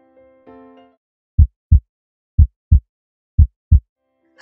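A few soft keyboard notes fade out, then a heartbeat sound effect: three loud double thumps, about a second apart.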